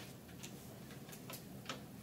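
A few faint, sharp clicks over quiet room tone, spaced unevenly and no more than a second apart.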